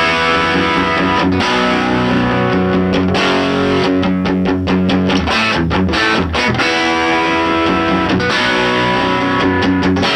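1961 Fender Stratocaster with single-coil pickups, played through an overdrive pedal into a 1964 Vox AC10 valve amp. It plays a distorted heavy rock riff of sustained power chords broken by short choppy passages.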